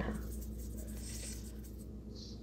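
Faint soft rubbing of a paintbrush mixing acrylic paint on a palette, over a low steady hum.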